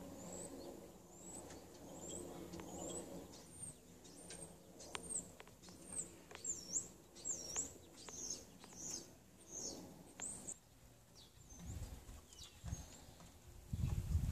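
A small bird's high, thin chirps repeat about once or twice a second for some ten seconds, with a low murmuring from the nesting hens in the first few seconds. A low rumble comes near the end.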